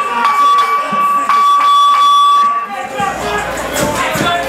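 Ringside electronic buzzer sounding one steady high tone, signalling the start of the round, over crowd voices; it cuts off about three-quarters of the way through.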